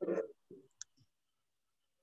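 The tail end of a spoken word, then a single sharp click a little under a second in.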